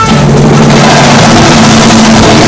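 Live pagode baiano band playing very loud, with drums and a steady bass line.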